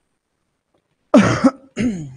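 A man coughing twice: two short, loud coughs about half a second apart, starting about a second in.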